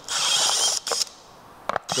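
Makita 18V cordless drill spinning a step drill bit to enlarge a hole in a scooter panel. It runs with a steady high whine for about a second, stops, then gives a short blip near the end.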